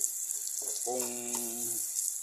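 Chopped garlic and pork pieces sizzling in hot oil in an electric skillet as they are stirred with a spoon, a steady high hiss of sautéing.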